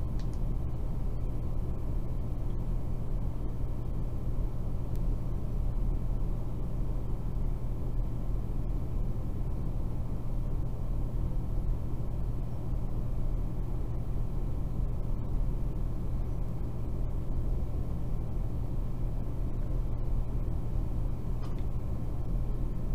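A steady low rumble with a hum in it, unchanging throughout.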